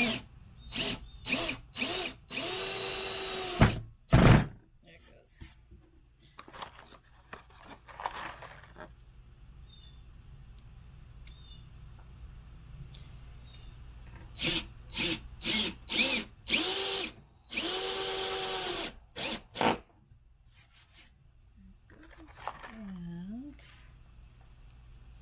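Cordless drill driving wood screws into a thick pine board: a few short trigger bursts, then a steady run of a second or so as the screw goes home, heard twice, with a loud knock about four seconds in.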